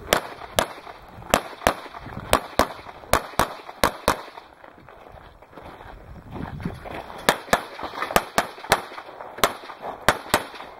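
Handgun shots fired in quick strings: about a dozen sharp shots in the first four seconds, a pause of about three seconds, then another rapid string of about ten shots.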